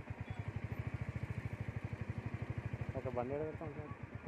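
Motorcycle engine running at low speed in slow traffic, a steady, rapid pulsing beat. A voice speaks briefly about three seconds in.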